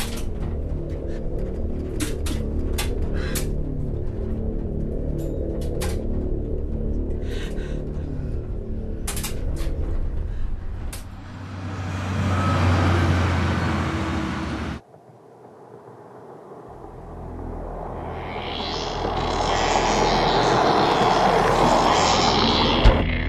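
Film soundtrack: a low droning music score with scattered clicks, swelling into a whoosh that cuts off abruptly about two-thirds of the way in. Then a van's engine and tyre noise grow steadily louder as it drives toward the listener on a highway.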